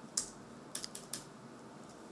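A computer keyboard being typed on: a handful of separate, light keystrokes.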